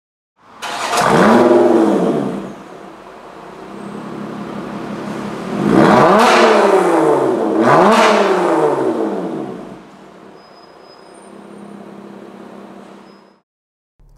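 Lotus Evora's 3.5-litre V6 engine revved three times: once about a second in and twice in quick succession around six and eight seconds, settling back to a steadier run between blips. The sound cuts off suddenly shortly before the end.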